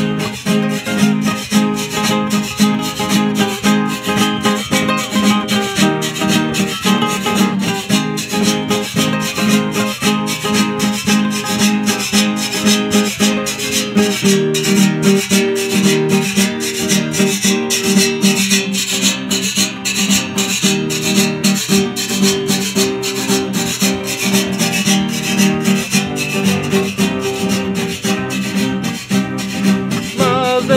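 Acoustic guitar strummed with a pick in a steady, even rhythm, chords ringing on without singing.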